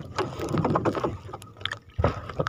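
Water sloshing and splashing against the hull of a small wooden outrigger fishing boat, with scattered light knocks and clicks.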